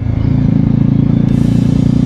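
Bajaj Dominar 400's single-cylinder engine running steadily under way at about 36 km/h, a continuous low engine note.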